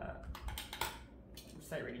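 A few light clicks and taps of a pair of eyeglasses being handled, most of them in the first second and one more about halfway through.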